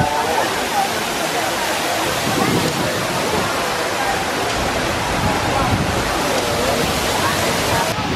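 Artificial waterfall pouring down rockwork: a steady, even rush of falling water, with faint voices of people talking behind it.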